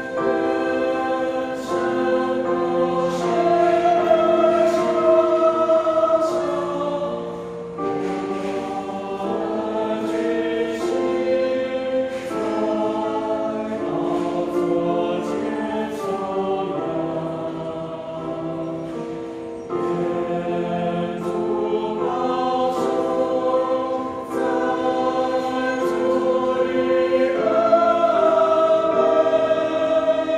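Mixed choir of men's and women's voices singing a hymn in harmony, with long held notes that change every second or two.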